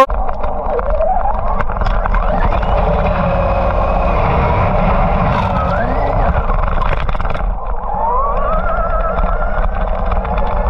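Traxxas XRT RC monster truck driving fast over grass, heard through its onboard camera: the electric motor whines and rises in pitch several times as the throttle is opened, over heavy wind and tyre rumble.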